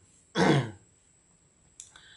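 A man clearing his throat once, a short harsh burst about half a second in, during a pause in his talk.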